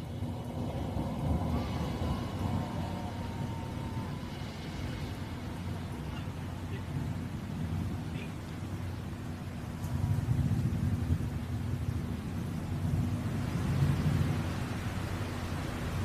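Steady low rumble with hiss on the live audio feed of a New Shepard rocket flight, coasting after main engine cutoff rather than under engine burn. It swells slightly about ten seconds in and again near the end.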